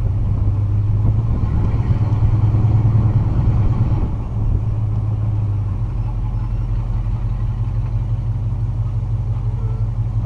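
Classic Pontiac GTO V8 heard from the open cabin as the car pulls away, louder for the first four seconds, easing about four seconds in, then settling to a steady cruise. The exhaust note is described as a really nice sound.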